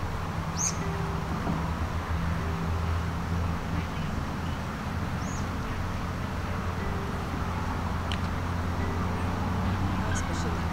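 Steady low hum of outdoor background noise, with two short high bird chirps: one about half a second in, one about five seconds in.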